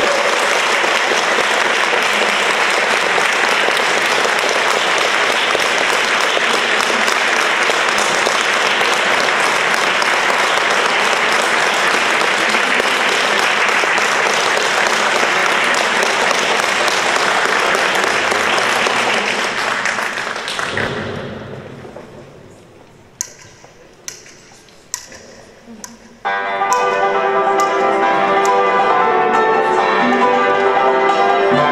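Audience applause, steady for about twenty seconds, then dying away to a few scattered claps. About four seconds before the end the instrumental ensemble starts its next piece.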